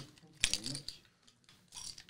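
A single sharp click about half a second in, followed by a few faint ticks and knocks, as drinks and paper cups are handled on a desk; otherwise quiet.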